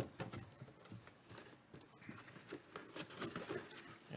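Faint handling noise: one sharp click at the start, then scattered light clicks and rustling.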